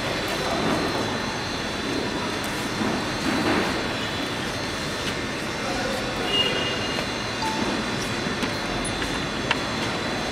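Steady background din of a factory workshop, with a few light knocks from a panel being handled and a sharp click near the end.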